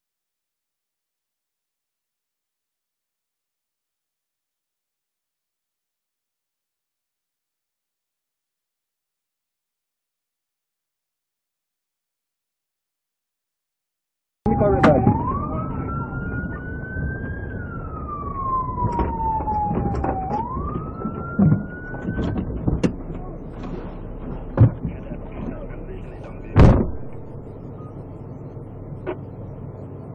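Silent for about the first half, then a police siren starts up, heard inside the patrol car: a slow wail that rises, falls and rises again before cutting off. Engine and road noise run beneath it, with a few sharp knocks, the loudest near the end.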